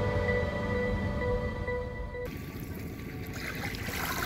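Sustained instrumental music that cuts off about two seconds in, followed by the wash of small waves lapping on a shore.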